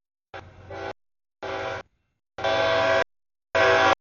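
Freight locomotive air horn sounding for a grade crossing in four separate blasts, each one cut off abruptly, the first faint and the last three loud.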